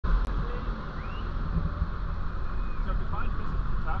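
Steady low rumble of a vehicle towing a dive boat on its trailer across the sand, with faint voices.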